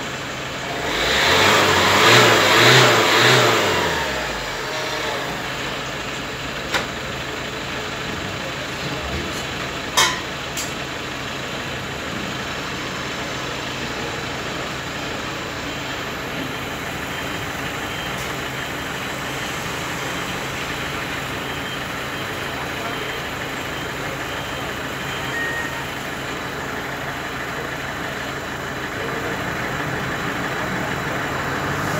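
A small van's engine is revved hard, its pitch climbing and peaking twice over about three seconds, then dropping back to a steady idle for the rest of the time. These are the free-acceleration revs of an exhaust emission test.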